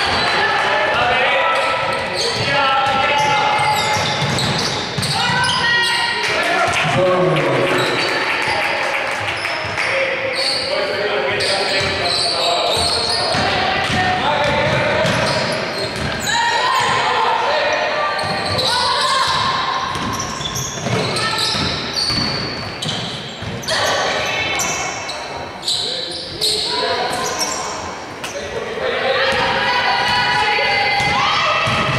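Basketball being dribbled on a wooden court during a game, with players' and spectators' voices carrying through a sports hall.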